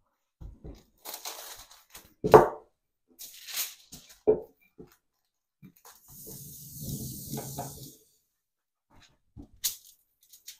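Aluminium kitchen foil rustling and crinkling as it is handled and pulled off its roll onto a table, with two sharp knocks about two and four seconds in and a longer stretch of rustling for about two seconds past the middle.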